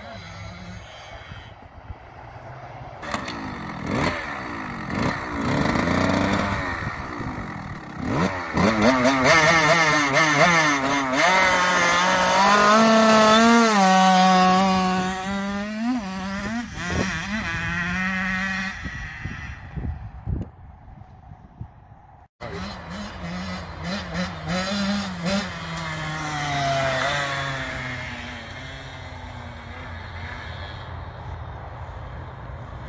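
Small KTM dirt bike engine revving up and down as it rides across a grass field, the pitch rising and falling with the throttle. It is loudest as it comes close in the middle, then fades back.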